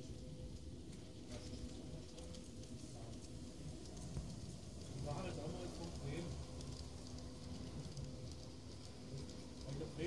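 Faint background voices over a low, steady rumble and hum from a G-scale model train rolling along garden track.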